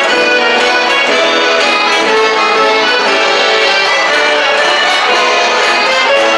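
Traditional gaúcho folk music led by an accordion, with guitar accompaniment and a steady beat.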